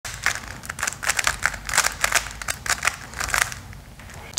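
A plastic Rubik's-type puzzle cube being turned quickly by hand: the layers snap round in quick, irregular clicks, several a second, which thin out near the end.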